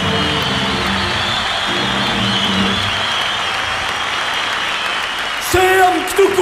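Audience applauding steadily, over sustained background music that fades out about halfway through. A man's voice starts up near the end.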